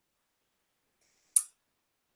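Near silence on the call audio, broken by a single short click about one and a half seconds in.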